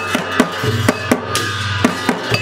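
Newar dhimay drums, large double-headed barrel drums beaten by hand and with a curled cane stick, playing a procession rhythm of loud strokes about three a second, with large hand cymbals ringing over them.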